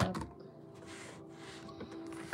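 Boxes and packaging handled on a table: a knock right at the start, then light rustling, over a faint steady hum.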